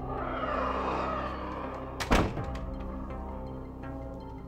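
Soundtrack music holding a steady chord, with a swell of hissing noise in the first second or so, then a single sharp, heavy thud about two seconds in that rings briefly.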